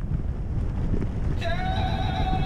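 Steady low rumble of wind on the camera microphone as a mountain bike rolls down a dirt forest trail. Near the end, background music comes in with a held, steady chord.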